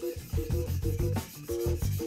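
A steel plane blade is rubbed back and forth flat on a wet waterstone, flattening its back, heard as repeated gritty rubbing strokes. Background music with held notes and a bass line plays under it.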